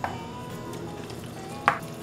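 A metal spoon stirring a thick, wet batter of grated zucchini and carrot in a plastic bowl, with one sharp click near the end.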